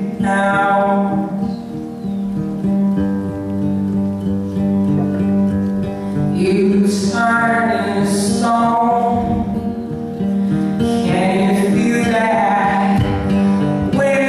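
A male singer singing live with his own acoustic guitar accompaniment; the voice comes in a few phrases, with the guitar chords ringing on between them.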